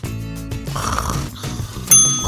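Cartoon snoring over light background music, then a bright bell-like timer ding near the end, which rings on and signals that the cookies are done baking.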